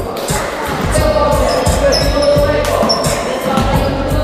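A basketball bouncing on a gym floor in irregular thumps during play, with players' voices and a few short high squeaks.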